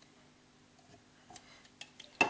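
Near silence with a few faint, light clicks and taps as a plastic spray bottle and cup are handled.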